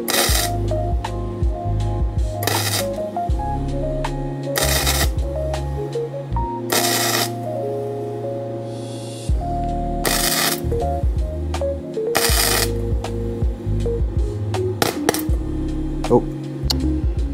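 Background music with a melody over a bass line, broken by about six half-second bursts of crackling from a CONENTOOL MIG-200 welder's flux-core arc, mostly about two seconds apart. This is stitch welding thin sheet steel in short bursts.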